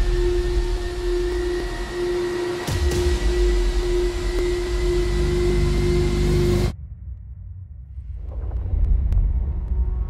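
Dramatic trailer score: a loud held tone over deep rumbling bass, with a heavy hit about three seconds in. It cuts off suddenly about two-thirds of the way through, and a quieter low rumble then swells back up.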